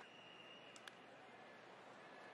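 Near silence: faint, even ballpark crowd ambience, with one short faint click a little under a second in.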